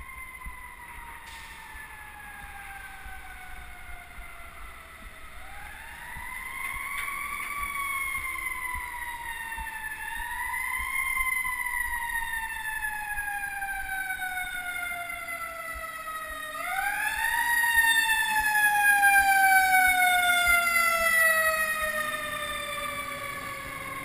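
Emergency vehicle siren wailing, its pitch rising quickly and then falling slowly, wound up three times in the manner of a mechanical siren. It grows louder toward the latter part, over the steady noise of street traffic.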